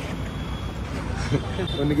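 Street background noise: a steady low rumble of traffic with people's voices, and a man starts speaking near the end.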